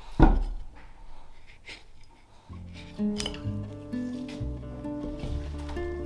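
A sharp knock of a carving axe bit cutting through a spoon blank onto a wooden chopping block shortly after the start, then a few lighter knocks. Background music comes in about halfway and carries on.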